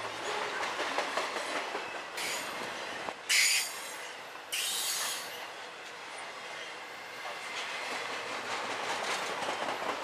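CSX intermodal freight train's trailer and container flatcars passing close by, the steel wheels running and clicking over the rail. A few short, high-pitched wheel screeches come in the first half, the loudest about three and a half seconds in.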